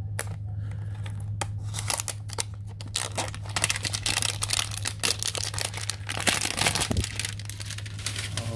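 A Donruss trading-card hanger box being torn open and its plastic pack wrapper crinkled, a dense run of crackles and tearing that is busiest in the middle. A steady low hum runs underneath.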